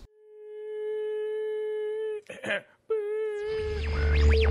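A steady electronic tone with even overtones fades in and holds, broken by a short noisy burst about two seconds in. The tone then comes back slightly wavering, and a synthesizer outro track with a heavy bass comes in near the end.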